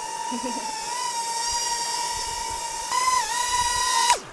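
Small FPV drone's motors and propellers giving a steady high whine over a hiss. The pitch lifts slightly about a second in, then rises sharply about three seconds in and dips with a throttle change.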